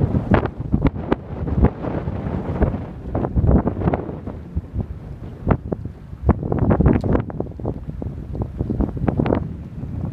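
Wind buffeting the microphone in irregular gusts, a low rumbling roar.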